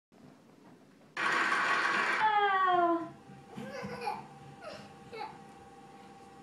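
About a second of loud, even noise, then a small child's high voice: one long falling wail followed by broken whimpering cries.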